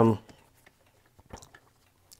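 A man's voice trailing off on a hesitating "um", then a pause broken only by a few faint short clicks.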